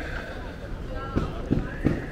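City pedestrian-street ambience: passers-by talking and short knocks of footsteps on stone paving, over a steady traffic hum, with a faint steady high tone in the second half.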